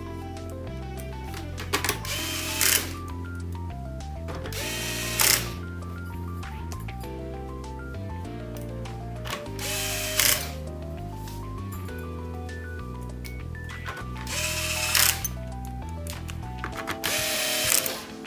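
Corded electric screwdriver running in about six short bursts as it drives screws into a keyboard's button circuit board, over background music with a steady bass line.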